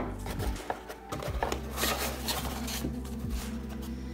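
Cardboard-and-foam packaging being handled, a few short rustles and scrapes as a foam insert is lifted out of a cardboard box, over soft background music.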